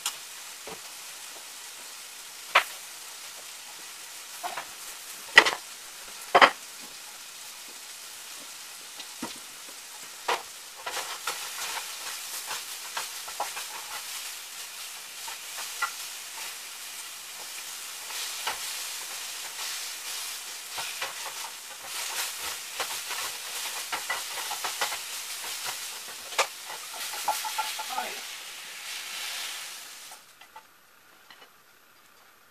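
Food frying in a skillet, a steady sizzle that grows louder from about a third of the way in. A few sharp knocks stand out, most of them in the first third.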